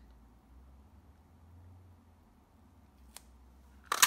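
A handheld butterfly paper punch snapping down through card stock and a sticky note just before the end, one loud sharp crunch, after a faint click about three seconds in. Otherwise a faint low hum.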